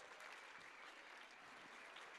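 Faint, steady applause from an audience welcoming a guest onto the stage.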